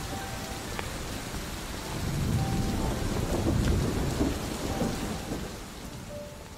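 Steady rain with a roll of thunder that rumbles in about two seconds in and dies away near the end.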